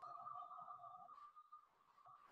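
Near silence with a faint steady high tone, joined by a second, lower tone for about the first second.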